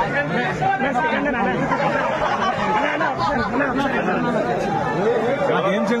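Crowd chatter: many young men talking and calling out over one another at once, a steady dense babble of voices.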